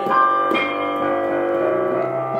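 Solo piano playing between sung lines: a chord struck right at the start and another about half a second in, then held notes ringing on.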